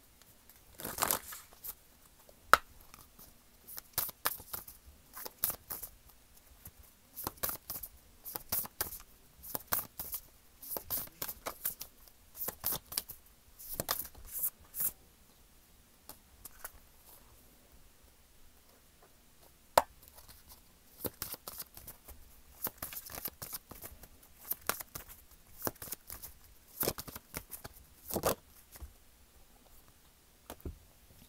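Tarot cards being shuffled by hand: quick runs of papery slaps and riffles, a pause about halfway through marked by one sharp tap, then more shuffling.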